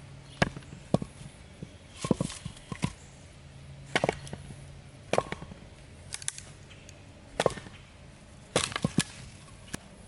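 Batoning with a Ka-Bar Becker BK2 knife, its thick 1095 carbon-steel blade driven through a log by blows from a wooden branch. About a dozen sharp wooden knocks come at an irregular pace, some in quick pairs or clusters, as the log is split into pieces.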